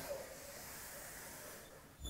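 Faint, steady background hiss of room tone with no distinct event, fading slightly near the end.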